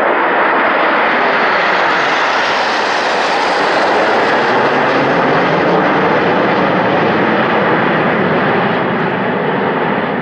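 A formation of nine BAE Hawk T1 jets, each with a single turbofan, passing low overhead. Their loud, rushing jet noise swells in the first seconds and eases slightly near the end.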